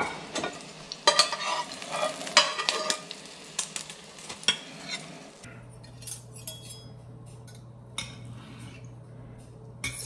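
A spatula scraping and clacking in a frying pan as an omelette is lifted onto a ceramic plate, with oil and butter sizzling in the pan, the sharpest clacks in the first three seconds. After about five seconds, a few light clinks of a fork and knife against the plate.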